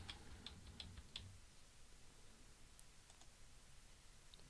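Faint computer keyboard taps and mouse clicks over near-silent room tone: a few light taps in the first second or so, then a couple of fainter clicks later, as margin values are typed in.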